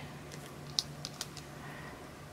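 A few faint, scattered light ticks and taps as a wooden cocktail stick presses thin polymer clay strands into grooves in a clay slab on the work surface.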